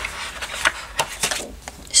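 Sheets of scrapbook paper being lifted, slid and turned over on a paper pad: rustling with several sharp crackles.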